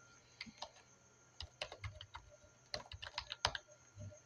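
Typing on a computer keyboard: irregular key clicks, a few at first, then two quick runs in the second half.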